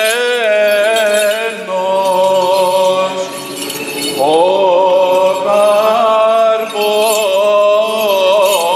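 Byzantine chant of a Greek Orthodox service: a man's voice singing a long, ornamented melodic line on sustained notes, with a new phrase entering on an upward slide about four seconds in.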